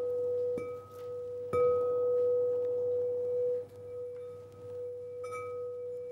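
8-inch frosted crystal singing bowl struck a few times with its mallet, ringing with one steady, clear tone that swells at each strike and then rings on.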